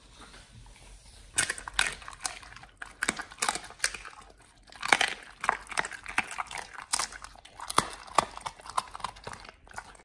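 A dog chewing and smacking its mouth: irregular crunchy, wet clicks, about two or three a second, starting about a second and a half in.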